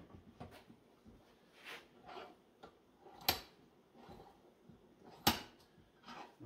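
Soft handling scuffs, then two sharp metal knocks about two seconds apart as a HydroVac brake booster's steel vacuum cylinder is set into the jaws of a bench vise.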